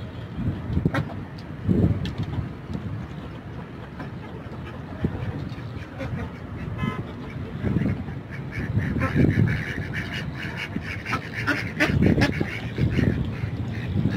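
Ducks quacking repeatedly.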